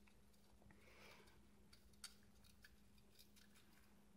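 Near silence: faint room tone with a low steady hum and a few very faint ticks.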